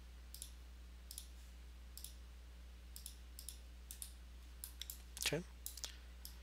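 Computer mouse clicking: about a dozen faint single clicks spaced irregularly, with a low steady hum underneath.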